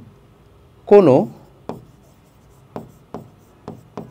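A pen writing on a board: short sharp taps and strokes of the tip come every half second or so through the second half. A man's voice makes a brief sound about a second in.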